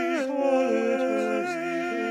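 Several overdubbed tracks of one man's voice singing a canon a cappella, the parts overlapping in harmony with held notes and pitch slides between them.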